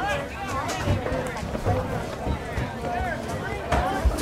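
Spectators' voices overlapping: scattered talk and calls from the sideline crowd, with no single voice clear.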